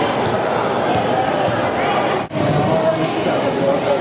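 Indistinct shouting and chatter of players and spectators at an indoor soccer game, echoing in a large hall, with a soccer ball thudding off feet a few times. The sound drops out briefly a little past two seconds in.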